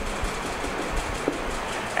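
Steady background hiss. A faint short squeak comes a little past halfway as a marker writes on a whiteboard.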